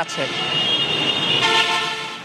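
Vehicle horn honking over road traffic noise: a high steady tone in the first half, then a lower, fuller horn tone from about halfway that holds to the end.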